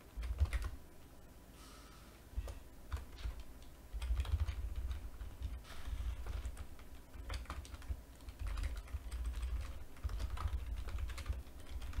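Typing on a computer keyboard in irregular runs of keystrokes, a brief flurry at the start, then sparser, then busier from about four seconds in.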